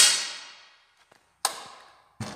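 Two air rifle shots about a second and a half apart, each a sharp crack followed by a short echoing fade.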